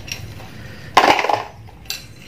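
A metal spoon scraping and clinking in a metal bowl of ice cubes, with one sharp clatter about a second in and a small click near the end.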